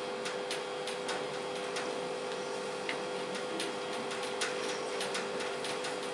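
Whiteboard marker writing on a whiteboard: a run of light, irregular ticks as the pen tip taps and strokes across the board, over a steady hum.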